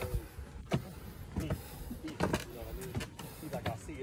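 A man's voice speaking in short, broken phrases. A few sharp knocks, spaced well under a second apart, sound like footsteps on wooden steps, over a low rumble from the phone being handled while walking.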